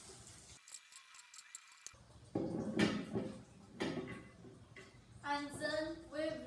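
Wooden spatula scraping and knocking against a pan as scrambled egg is served out onto a plate: two short clattering bursts about a second and a half apart, a couple of seconds in.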